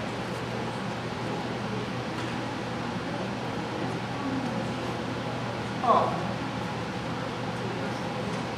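Hall ambience: a steady low hum under a murmur of distant voices, with a short, loud exclaimed "oh" about six seconds in.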